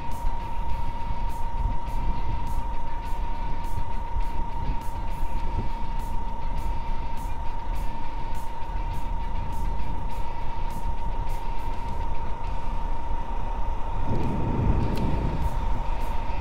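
Small single-cylinder TVS Sport 100 motorcycle engine running at a steady cruise, with low wind rumble on the microphone and a steady high whistle.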